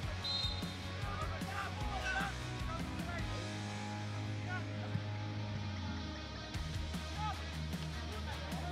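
Background music with a steady beat and low bass notes, with a voice over it in the first few seconds.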